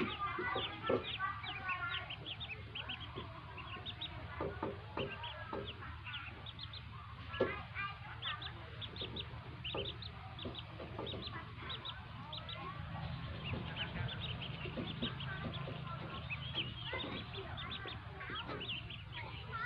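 A brood of newly hatched ducklings peeping: many short, high calls overlapping, several a second.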